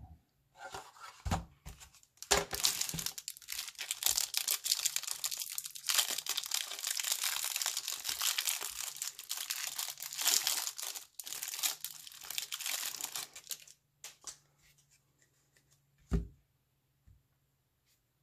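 Clear plastic wrapper of a pack of baseball trading cards being torn open and crinkled by hand for about twelve seconds. A few small clicks and one short thump near the end follow.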